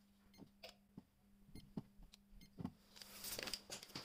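Faint clicks of buttons being pressed on a Secure Freedom prepayment electricity-meter keypad, about six presses spaced irregularly over the first three seconds as a top-up code is keyed in. Handling rustle near the end.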